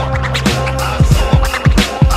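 Hip-hop instrumental beat: punchy drum hits over a held bass line, with turntable scratching.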